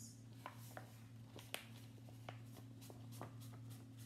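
Faint rustling and soft crackles of a stack of paper sheets being folded and creased in half by hand, a scatter of brief crinkles over a low steady hum.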